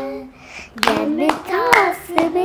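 Young girls singing a devotional song to rhythmic hand claps. A held note breaks off just after the start, and after a short pause the singing picks up again about a second in, with several sharp claps.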